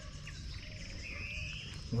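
Outdoor ambience with a short, high, rapid trill about a second in, over a faint steady high tone from insects and a low rumble.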